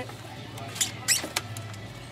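Three short clicks of small parts being handled, a refrigerator's control unit and its wiring being picked over, about a second in, over a steady low hum.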